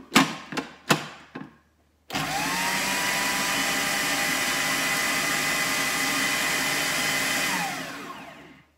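Food processor lid clicked into place with a few sharp plastic knocks, then the motor runs for about five seconds, chopping a basil, pine nut and garlic mix: its whine rises as it spins up and falls away as it winds down near the end.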